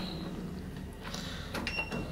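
A few light clicks, then a short, steady electronic beep about one and a half seconds in, from a hotel elevator's keycard reader as a room keycard is held to it, over a low steady hum.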